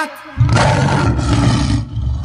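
A lion roar sound effect: one long roar that starts about half a second in, after the beat has cut out.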